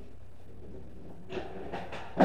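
Steady low hum with a few soft footsteps on a hard floor in the second half, as a player walks around the pool table.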